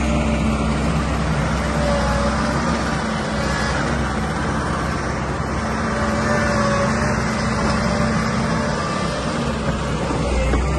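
Caterpillar 316EL crawler excavator's diesel engine running steadily under load as the machine works, tracking and swinging, with a constant low hum and a few brief faint whines.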